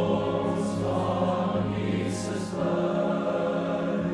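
Boys' school choir singing a carol in sustained chords in a reverberant church, over a steady low organ accompaniment; sung 's' sounds hiss twice, about half a second in and just after two seconds.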